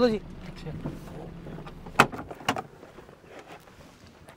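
Doors of a Suzuki Alto hatchback being opened: two sharp latch clicks about half a second apart, about two seconds in.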